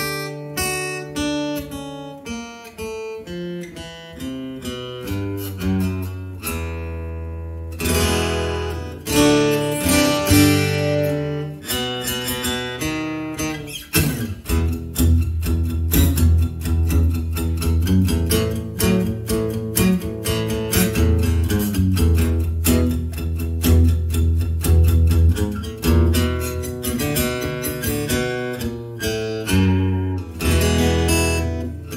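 Epiphone Hummingbird Pro acoustic-electric guitar strummed in chords, heard through its newly installed Shadow under-saddle pickup and a single PA speaker. The replacement pickup is working and the tone is a little bass heavy.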